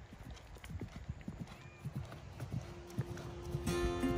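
A horse's hooves striking grass turf at a canter, an uneven run of soft thuds. Music with steady held notes comes in near the end.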